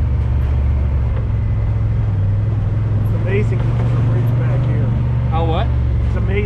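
Honda Talon side-by-side's parallel-twin engine running at a steady low drone while the machine drives along a muddy trail.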